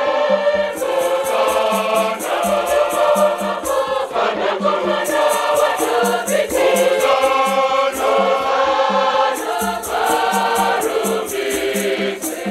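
Large mixed choir singing a Shona Catholic hymn in full harmony, with held chords. A quick, steady percussion beat runs under the voices.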